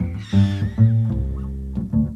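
Live electro-jazz: a bass plays a repeating line of short, low notes, and over it a high, wavering, gliding electronic effect sounds in the first part and fades out by about the middle.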